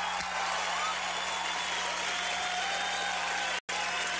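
Applause, steady throughout, with faint voices mixed in; the sound drops out for a split second near the end.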